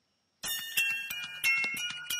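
Near silence, then about half a second in a hip-hop beat starts playing suddenly: bell-like melody notes over sharp drum hits. It is the exported GarageBand mix played back as an MP3 in iTunes.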